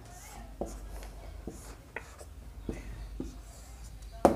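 Felt-tip marker drawing on a whiteboard: a series of short, faint strokes as brackets and an arrow are drawn.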